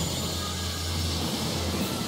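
Anime alchemy transmutation sound effect: a loud, steady rushing noise over a deep hum.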